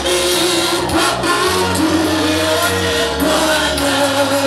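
Amplified group worship singing: a woman leads on a microphone with other voices joining in. Long held, sliding notes sound over sustained low bass notes.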